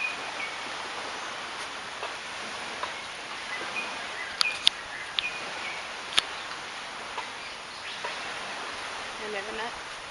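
Steady outdoor background noise with a few faint bird chirps, and several sharp clicks about four to six seconds in.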